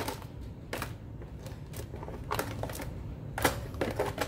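Cooked snow crab legs clattering against each other and a plastic bowl as they are shuffled by hand: a scattering of light clicks and knocks at an uneven pace.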